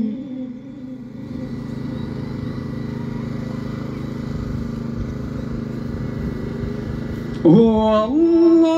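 A pause in a chanted recitation, filled by a steady low rumble. A voice starts chanting again loudly near the end.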